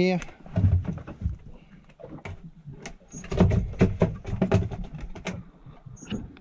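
Irregular knocks and rubbing of handling noise close to the microphone, from a gloved hand gripping and lifting a fish. There are two spells: a brief one about half a second in, and a longer run from about three to five seconds.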